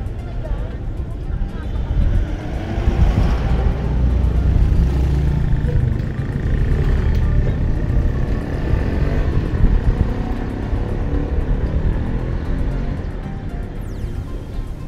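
Street traffic with a motorcycle tricycle's engine running close by, loudest a few seconds in, over background music.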